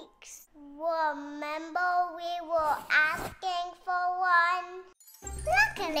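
Short children's music jingle with a run of held, evenly pitched notes and a brief sweeping sound effect about halfway through.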